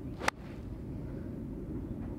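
A golf club striking a ball off the fairway turf: one sharp click about a third of a second in, over a steady low outdoor rumble.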